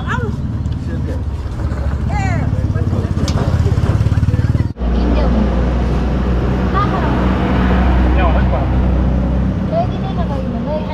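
Street sound of a motor vehicle engine running close by, with people's voices faintly over it. About halfway through the sound breaks off abruptly and gives way to a steadier low hum.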